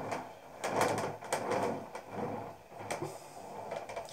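A hand-held rib scraping and smoothing the inside wall of a soft, hand-built clay pot, in a series of short uneven strokes with a couple of sharp ticks.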